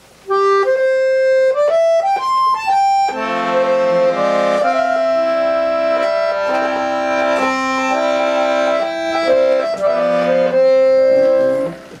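Piano accordion playing a melody in the style of traditional Japanese music: single held notes for the first few seconds, then fuller, with lower sustained notes under the tune.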